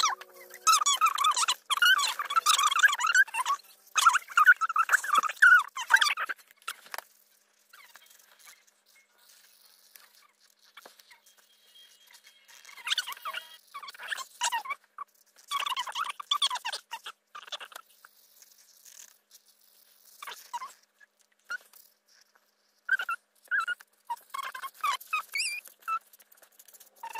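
Alcohol marker tips squeaking on paper in short, irregular colouring strokes, dense for the first several seconds, then a quiet stretch, then scattered strokes again through the rest.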